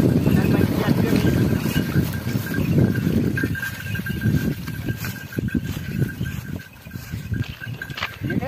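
Wooden bullock cart hauled by a pair of bullocks up out of a river: a loud rumbling churn for the first few seconds that fades, followed by scattered knocks and rattles of the cart. A thin steady high tone sounds throughout.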